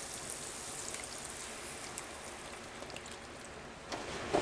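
Heavy cream poured from a carton into a cast iron Dutch oven of boiled potatoes, a faint steady trickle.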